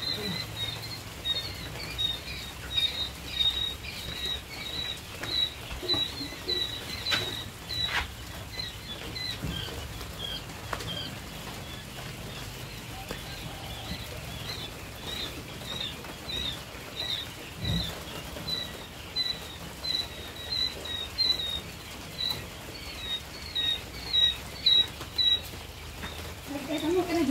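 Day-old quail chicks peeping in a brooder: a steady stream of short, high chirps, busiest near the start and the end, with a few knocks and clicks from handling in between.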